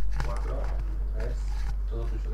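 Steady low electrical hum on the microphone line, the loudest thing present, under faint indistinct voices in the background.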